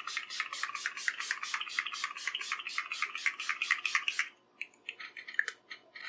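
Makeup setting spray misted onto the face in rapid repeated pumps, short hissy spurts about seven a second, thinning to a few scattered spurts after about four seconds.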